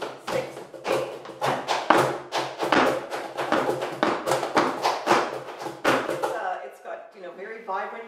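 Flamenco handclaps (palmas) beating out a 12-count compás, about three to four claps a second with uneven accents, stopping about six seconds in.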